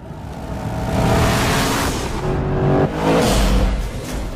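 Mercedes-Benz SLS AMG's 6.3-litre V8 running at full speed as the car rushes through a tunnel. The sound swells twice, the engine note falling in pitch during the first swell, and a deep rumble comes in near the end.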